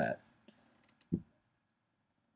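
The last spoken word ends, then a few faint clicks and one short, low thump about a second in, followed by near silence.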